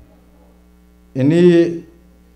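A steady low electrical mains hum through the pauses of a man's speech over a microphone. One short spoken word breaks in about a second in.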